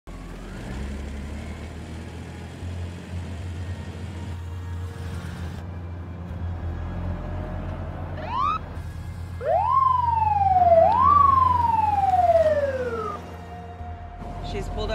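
Police car siren sounding a short rising whoop, then two loud wails, each rising quickly and falling slowly, over a low steady hum.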